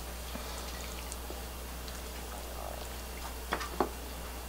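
Steady low background hum, with two light, sharp knocks near the end as kitchen utensils and dishes are handled while the stir-fried kimchi is plated.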